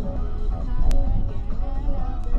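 Music from a car radio playing inside a taxi's cabin over the low rumble of engine and road noise, with one sharp click about a second in.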